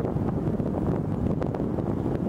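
Wind buffeting the microphone, a steady low rumble, with a couple of brief sharp clicks about a second and a half in.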